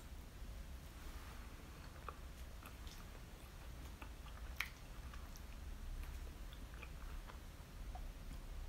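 Faint chewing of a mouthful of soft chiffon cake with whipped cream, with small wet mouth clicks scattered through and one sharper click about halfway through.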